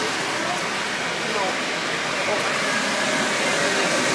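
Steady shop background hum with faint voices talking in the distance.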